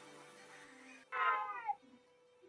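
A single meow, falling in pitch and lasting about half a second, a little over a second in.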